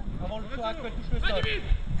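Speech: voices calling out short words, over a steady low rumble.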